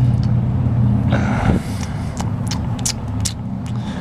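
A motor vehicle's engine running nearby as a steady low rumble, growing quieter about a second and a half in, with a few light clicks near the end.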